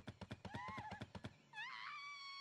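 Faint cartoon soundtrack: a fast run of light taps, then about one and a half seconds in a cartoon duck's cry that wavers, rises, and then holds steady.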